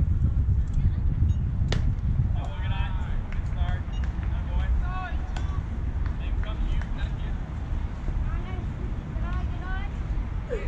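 Wind rumbling on the microphone, with distant voices calling out now and then and one sharp smack about two seconds in: a baseball pitch popping into the catcher's mitt.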